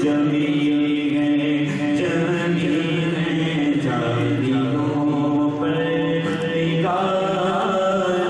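Men singing an Urdu naat without instruments, amplified through microphones, in long held notes that shift slowly in pitch.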